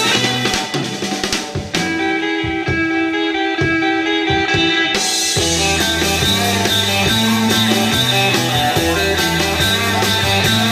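Live instrumental surf rock band with electric guitar, bass and drum kit. For the first half the bass and steady beat drop away, leaving sparse guitar with a long held note and a few drum hits, then the full band comes back in about five seconds in.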